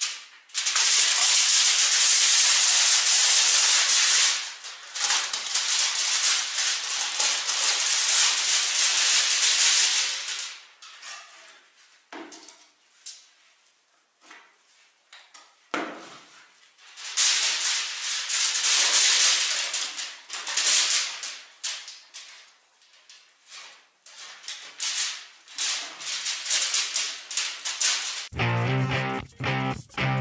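Aluminium foil crackling and rustling as it is handled and pulled at the top of a brick chimney, in two long spells with scattered clicks between. Background music with a beat comes in near the end.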